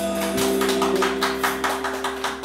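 Live band music: an electric guitar note held while the drums tap out a fast, even beat, about six strokes a second.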